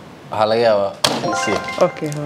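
A short voice, then a sharp click about a second in followed by a short electronic jingle of steady held tones, the sound of a tabletop game answer button being pressed, with voices over it.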